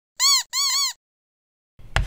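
Two short cartoon sound effects, each a high warbling tone that rises and falls in pitch several times, in the first second. Near the end comes a brief scratchy noise with a sharp click.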